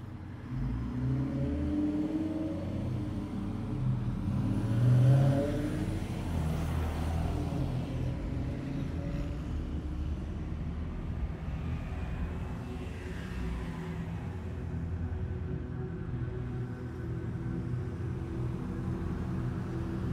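Cars passing on a city street at night over a steady low traffic rumble, with the loudest pass about five seconds in.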